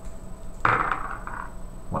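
A few dice thrown onto a cardboard game board, clattering briefly about half a second in: a combat roll.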